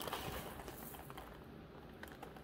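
Small glass crystal and rose quartz beads rattling and rustling in the hand as a fresh handful is gathered, with a brief noisy rustle in the first half-second, then a few faint clicks.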